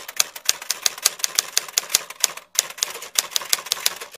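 Typewriter sound effect: rapid key clicks, about six a second, with a brief break about two and a half seconds in.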